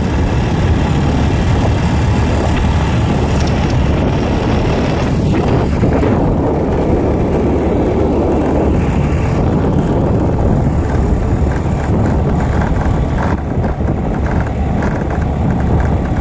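Motor scooter riding over a brick-paved road, heard mostly as steady wind buffeting on the microphone with tyre and motor noise beneath.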